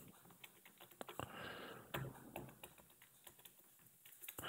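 Faint computer keyboard typing: a run of irregular key clicks.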